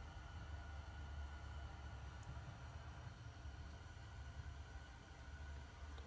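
Very quiet room tone: a low steady hum under a faint hiss.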